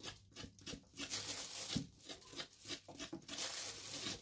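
A knife blade scraping the fuzzy skin off a hairy gourd (chi qua) in a series of short, faint, irregular strokes.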